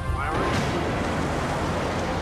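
Rocket blast of a sci-fi escape pod launching: a steady rushing roar that starts about half a second in, under music.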